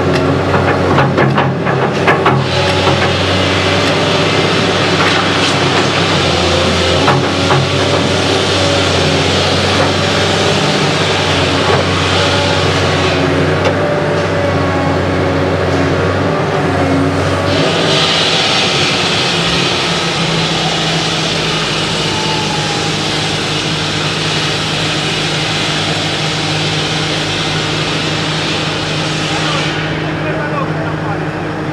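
Caterpillar 321D excavator's diesel engine running steadily under load while it digs soil, with a few sharp knocks from the bucket and arm in the first couple of seconds. The engine note shifts a little over halfway through.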